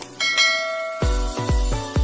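A bright chiming bell sound effect rings out just after the start, as the notification bell is clicked, and fades. About a second in, background music with a heavy, regular bass beat comes in.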